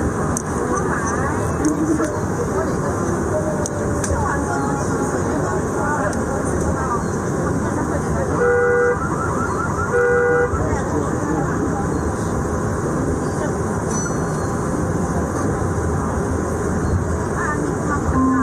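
Steady rumble of a metro train running, heard from inside the car, with indistinct voices. A little past the middle come two short electronic beeps about a second and a half apart.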